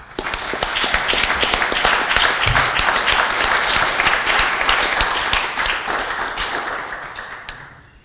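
Audience applauding: a dense patter of many hands clapping that starts at once, holds steady for several seconds and then dies away near the end.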